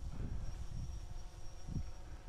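Wind buffeting the microphone as an uneven low rumble, with a faint steady high-pitched tone above it.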